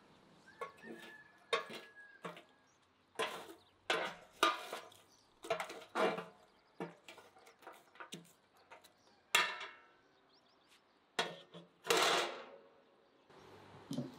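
Irregular clinks and clatters of kitchen utensils and cookware, about fifteen sharp knocks, some with a short ring, with a longer, louder clatter near the end.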